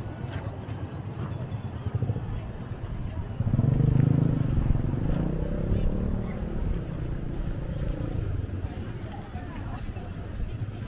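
Outdoor street sound of people talking and a motorcycle engine, with the engine growing louder for a few seconds about a third of the way in.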